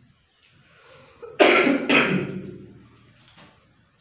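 A man coughing twice in quick succession, about a second and a half in, each cough fading over about half a second.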